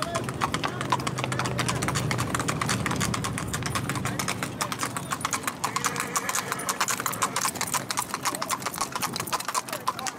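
Hooves of several gaited horses clip-clopping on a paved road, a quick, steady stream of sharp hoofbeats.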